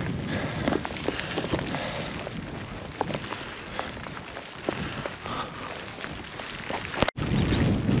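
Wind rushing over the microphone in a steady haze of noise, with scattered light ticks and taps through it. The sound drops out for an instant about seven seconds in, then comes back as a louder, deeper wind rumble.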